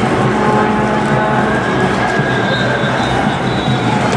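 Loud, steady street din of a protest crowd, with a few faint held tones partway through.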